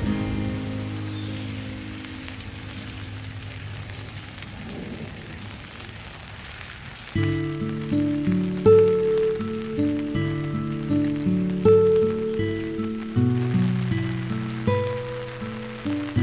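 Steady rain falling on garden foliage and paving, under soft background music. A held low chord fades over the first several seconds, then plucked notes with a steady pulse come in about seven seconds in.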